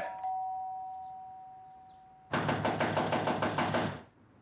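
A doorbell chime rings and fades away over about two seconds. It is followed by a loud, rapid run of banging on the door.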